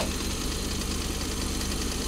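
Maruti Suzuki Alto's small three-cylinder petrol engine idling steadily, heard up close in the open engine bay.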